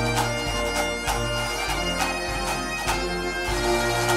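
Bagpipe music: pipes playing a tune, changing note about every half second.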